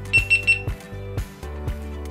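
Three quick high beeps at one pitch from a GoPro Hero 12 Black action camera: its status beeps as it powers itself off and on while installing a firmware update. Background music with a steady beat plays underneath.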